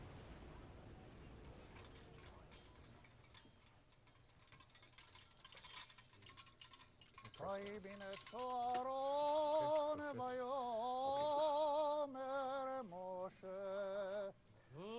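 Small bells on silver Torah finials (rimonim) jingling faintly as the finials are handled and set on a Torah scroll. About seven seconds in, a male voice begins a chant in long held notes.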